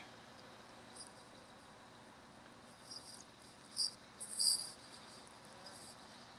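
Quiet outdoor background with a few short, faint, high-pitched chirps about four seconds in.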